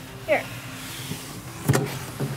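Cardboard outer sleeve of a large computer box sliding up off the inner box: a steady scraping hiss for about a second, then one sharp knock as it comes free.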